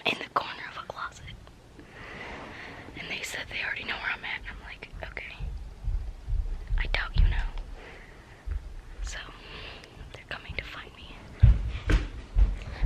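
A girl whispering close to the microphone, with low bumps and a sharper thud near the end as the handheld camera is moved.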